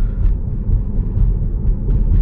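Steady low rumble of tyre and road noise inside a moving Tesla's cabin at city speed.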